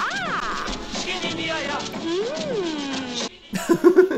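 Film soundtrack music: a lively 1940s song with percussion, with swooping up-and-down pitch glides over it, and a few sharp knocks near the end.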